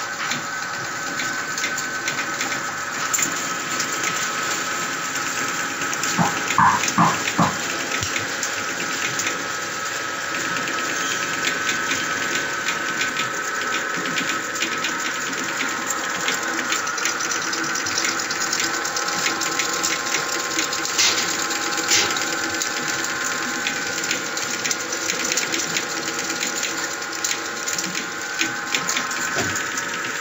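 Automatic ice cream stick loading and box-filling machine running, a steady mechanical whir and whine laced with fine, rapid clicking of its moving parts. A few louder knocks come about six to seven seconds in.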